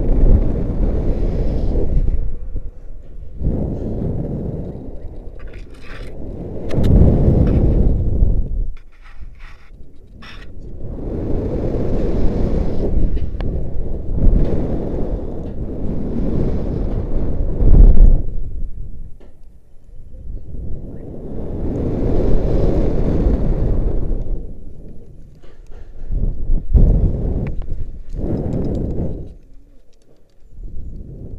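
Rushing wind buffeting the jumper's camera microphone during rope-jump swings, loud and mostly low. It swells and fades about every five seconds as the rope swings back and forth, with a few faint ticks partway through.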